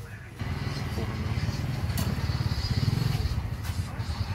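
A small engine running close by, its low rapid pulsing coming in about half a second in.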